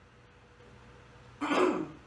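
A woman clears her throat once, a short loud sound about a second and a half in, breaking faint room tone.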